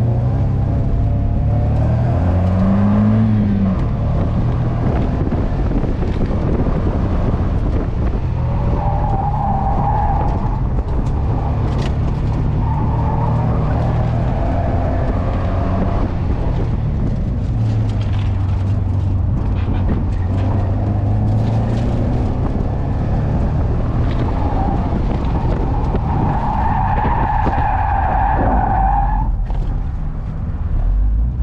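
A small convertible's engine revved hard and shifted as the car is driven fast, with wind and road noise in the open cockpit. Tires squeal in several bursts through the corners, the longest squeal coming near the end as the car loses grip and spins.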